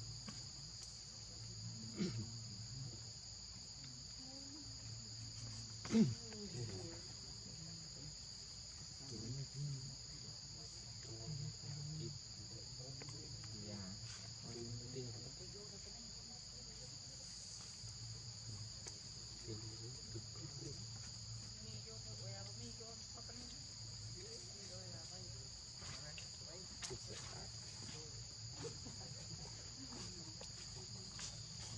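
A steady, high-pitched insect chorus of crickets or cicadas droning without a break. About six seconds in, a person briefly murmurs and laughs.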